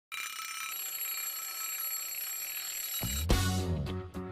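An alarm-clock bell ringing steadily for about three seconds. It stops as band music comes in with a bass line and a steady beat.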